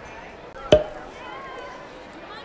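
A single sharp knock with a short ring, about three quarters of a second in, over faint background chatter of a large hall.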